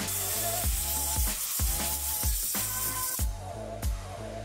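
Aerosol can of dielectric grease spraying onto the headlight bulb connector: a steady hiss that stops abruptly about three seconds in. Background music with a steady beat plays throughout.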